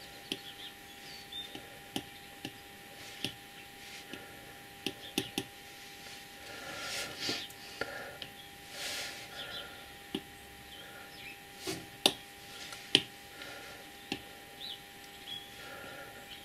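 Apple Pencil tip tapping and stroking on the iPad Pro's glass screen: scattered sharp clicks, the loudest two about twelve and thirteen seconds in, with a few soft swishes around the middle.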